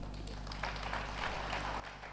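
Soft applause from an audience, lasting about a second and a half.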